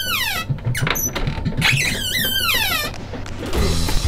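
Cupboard door hinge squeaking as the door swings: a long squeal sliding down in pitch, heard twice, the second starting about a second and a half in.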